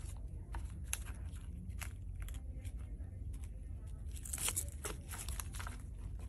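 Scattered small clicks and crinkling rustles of fingers handling adhesive TENS electrode pads and their thin lead wires while plugging them into the unit's leads, with a denser rustle about four and a half seconds in, over a low steady hum.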